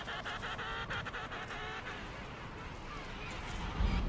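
Emperor penguins calling: a few pulsed, honking calls during the first two seconds, then fainter background sound with a low rumble building near the end.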